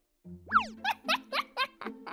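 Playful cartoon music and boing-type sound effects: a falling pitch glide, then a quick run of about six short bouncy notes, each dipping in pitch.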